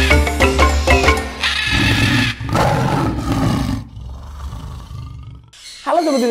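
Intro jingle: mallet-percussion music, then from about two seconds in a roar-like animal sound effect that fades away.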